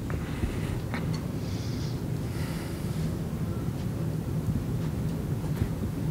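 Steady low rumble of background room noise, with no speech.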